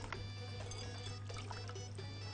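Soft background music with a steady low hum under it, and faint dripping and trickling of water as sliced potatoes are squeezed and lifted out of their soaking water.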